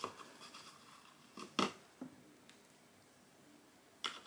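Quiet room with a few faint, short clicks and taps, one near the start and a couple about one and a half to two seconds in.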